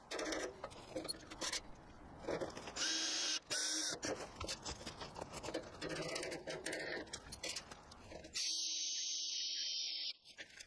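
Hammer tapping a punch against a metal channel to mark hole spots, a string of sharp knocks. Near the end a Ryobi cordless drill runs steadily, boring into the channel.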